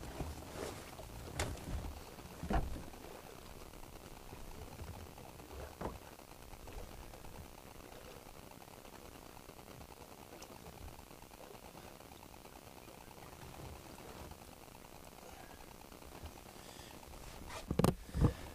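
A few sharp knocks in the first few seconds, as of gear and a hatch being handled on a fibreglass bass boat, over a steady low outdoor hiss.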